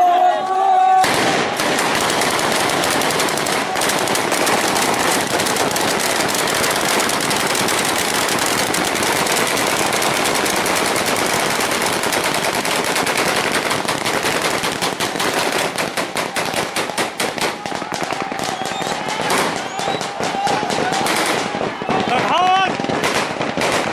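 Many automatic rifles fired into the air in celebration: a dense, continuous stream of overlapping bursts and single shots that starts suddenly about a second in and thins out somewhat in the second half.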